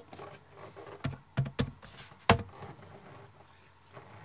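Light handling noise: a few soft, scattered clicks and knocks, the loudest a little over two seconds in, as hands settle on an acoustic guitar before playing.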